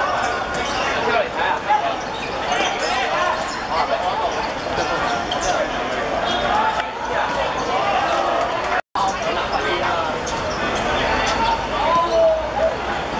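Five-a-side football on a hard outdoor court: players and onlookers shout and call out while the ball is kicked and thuds on the surface. The sound drops out abruptly about nine seconds in at an edit cut.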